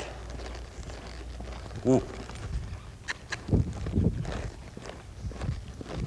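Hoofbeats of a horse moving across soft arena dirt: dull, irregular thuds with a few sharper clicks in the second half. There is one short voiced "mm" about two seconds in.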